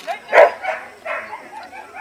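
A border collie barking during an agility run: one loud bark about half a second in, followed by a couple of weaker ones.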